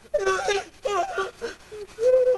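High, wavering wordless vocal cries from people horseplaying, about three in quick succession.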